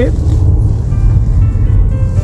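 Steady low rumble of a car driving, heard from inside the cabin, with faint music in the background.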